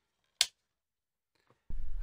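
A single sharp click about half a second in, then near silence; near the end a low, steady room hum fades in.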